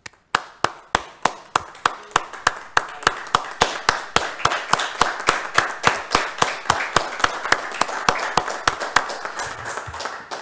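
Applause: hands clapping in sharp, regular claps about four a second, thickened by more clapping hands from about three seconds in.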